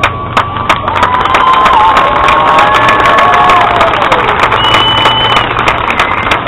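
High school marching band playing, with a crowd cheering over the music. Long held high notes ring out through the middle of it.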